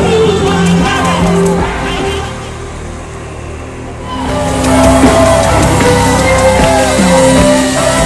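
A crowd singing a revival hymn together over a live band. The music thins out and softens about two seconds in, then swells back fuller about four seconds in.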